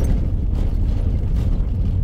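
Steady low road rumble of a Mercedes-Benz Sprinter van heard from inside the cab: engine and tyres running over patched, potholed asphalt, with a couple of faint knocks as the wheels cross the rough patches.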